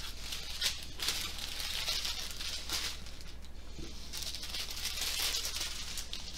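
Small plastic bags of diamond painting drills rustling and crinkling in irregular bursts as they are picked up and shuffled across the table. A low steady hum runs underneath.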